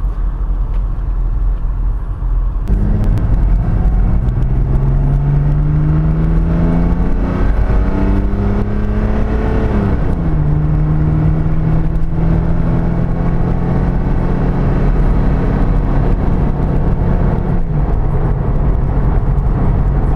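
Mercedes-Benz diesel car engine heard from inside the cabin, pulling away and accelerating with a steadily rising pitch for several seconds. About ten seconds in the pitch drops as the car shifts up a gear, then the engine runs steadily at cruising speed over road rumble.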